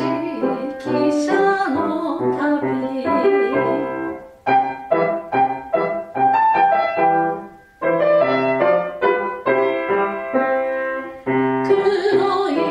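A soprano singing with piano accompaniment, her phrase ending about four seconds in. The piano then plays an interlude of separate, clearly struck notes alone, and the voice comes back in right at the end.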